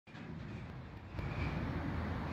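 Steady low outdoor background rumble, growing a little louder about a second in.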